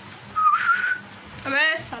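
A woman whistling one short note that glides slightly upward, about half a second in. Near the end, a brief sound from her voice.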